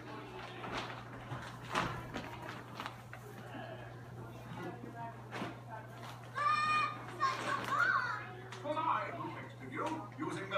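Indistinct voices in a room, with a child's high-pitched voice calling out from about six seconds in. A few sharp knocks come in the first half, over a steady low hum.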